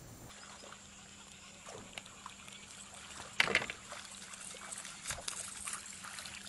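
Scattered light knocks and small water sounds aboard a bass boat, with one louder sharp knock or splash about three and a half seconds in.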